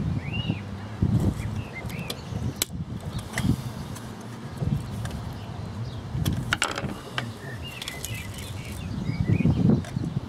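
Handling noise from a metal meter front plate being worked by hand with a screwdriver: rubbing, light knocks and a few sharp metallic clicks, the loudest about six and a half seconds in. Small birds chirp now and then in the background.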